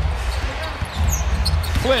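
A basketball being dribbled on a hardwood arena court during live play, with short high sneaker squeaks over a steady low arena hum.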